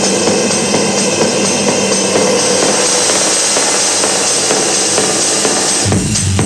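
Techno track played over a club sound system, in a breakdown: the kick and bass drop out, leaving a hissing noise wash over a steady held drone that brightens in the second half. The kick drum comes back in at the very end.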